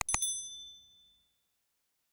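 Subscribe-animation sound effect: a quick double mouse click on the notification bell icon, then a bright bell ding that rings out and fades over about a second and a half.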